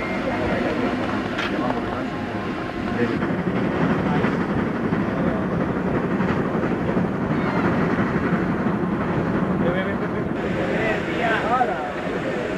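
Steady rumble of a train running on the rails, heard from on board, with people's voices mixed in. The sound changes abruptly about three seconds in and again near the end.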